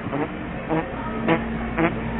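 Footsteps and camera handling knocks from someone walking across a hard store floor, about two a second, over a steady low hum.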